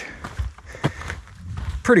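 A hiker's footsteps on a forest trail: a couple of short steps about half a second and a second in.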